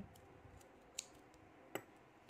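Spring-loaded thread snips cutting crochet yarn: two short, sharp clicks, about a second in and near the end, over near silence.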